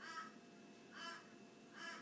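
Three faint, short pitched animal calls about a second apart.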